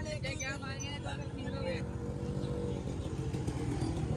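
Small motorcycle engine running with a fast, even firing pulse, its pitch creeping up in the second half as the bike moves off. Voices of people nearby over the first couple of seconds.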